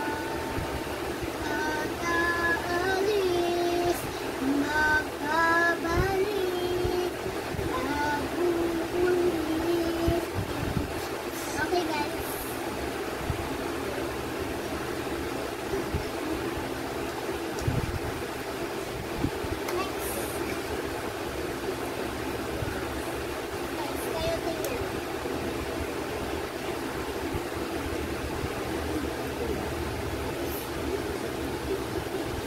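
A young girl's voice singing a short wordless tune in held, sliding notes for about the first ten seconds. After that, only a steady background hum with a few small clicks.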